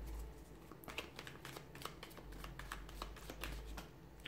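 A tarot deck shuffled and handled by hand: a quick, faint run of light card clicks and flicks starting about a second in.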